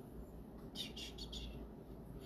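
Faint bird chirping: a quick run of four short, high chirps about a second in, over a low steady room hum.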